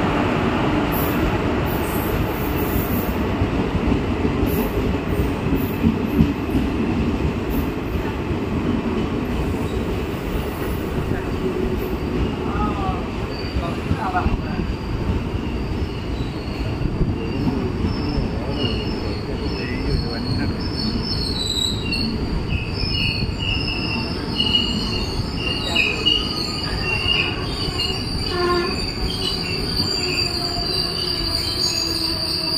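Indian Railways passenger coaches of the Aronai Express rolling past close by: a steady, loud rumble of wheels on rail. From about halfway through, high-pitched metallic squeals come and go.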